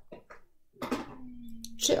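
A woman's voice: a steady held vocal tone, like a drawn-out hesitation, runs into the start of her speech near the end. A few faint short clicks of cards being handled come at the start.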